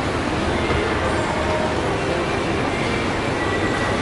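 Steady ambient hubbub of a busy shopping-mall atrium: indistinct crowd voices blending into an even wash of echoing hall noise.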